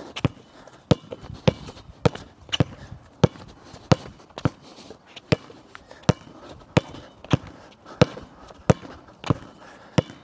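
Basketball dribbled on a hard court: a steady run of sharp bounces, about one and a half a second.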